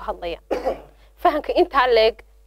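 A woman speaking, broken by a short cough about half a second in.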